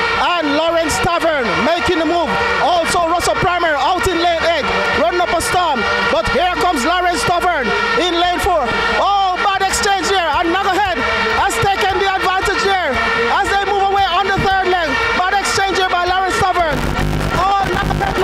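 Speech: a commentator calling the race, over steady droning tones in the background.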